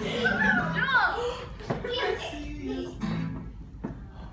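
A children's action song playing, with young children's excited voices and calls over it.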